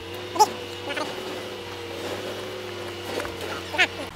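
A few short, high, whimpering yelps like a dog's, the loudest about half a second in and just before the end, over a steady two-note hum that stops abruptly at the end.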